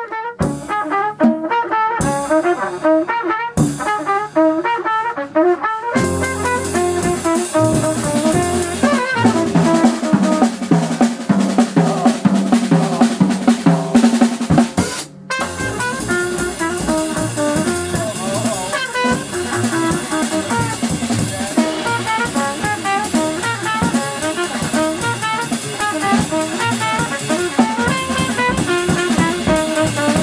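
A live jazz trio: a trumpet plays the melody over double bass and drum kit. The opening phrases are sparse and broken by short silences; the drums come in fully about six seconds in, with cymbals running through. There is a brief break in the sound about halfway.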